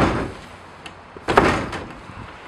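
The hinged plastic lid and body of a Nexus City 64G compost bin being handled: a sudden hollow knock about a second and a half in that dies away quickly, with a small click just before it.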